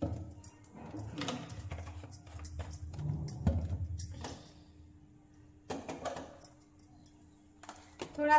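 Steel kitchen pots and utensils clinking and rattling as they are handled, in a few irregular clusters of knocks and jangles with dull bumps, the busiest in the first half.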